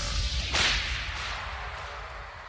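A single sudden sound effect about half a second in, sharp and swishing, with a long echo that fades slowly away.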